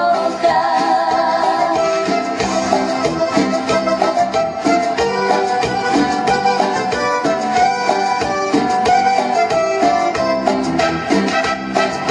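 Live dance band playing: a woman sings over saxophone, trumpet, electric guitar, drum kit and bongos.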